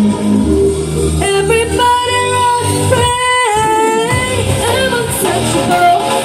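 K-pop song with singing, a sung vocal line over a dance beat with a few long held notes; the bass drops out briefly a little after halfway.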